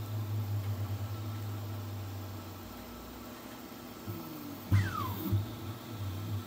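Flsun V400 delta 3D printer's stepper motors running: a steady low hum that fades after a couple of seconds, then, about five seconds in, a sharp click and a quick move with a whine falling in pitch as the print head travels in over the bed.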